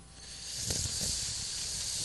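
A steady, breathy hiss close to a handheld microphone, lasting nearly two seconds: a man's long breath or drawn-out 'sss' while he pauses between sentences.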